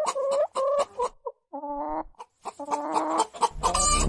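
A hen clucking in a quick run of short calls, with a brief pause partway through. Music comes in near the end.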